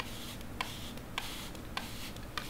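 Quiet clicks of a plastic trigger spray bottle misting moist seed-starting mix, one squeeze about every 0.6 s, four in all, each with a short soft hiss of spray.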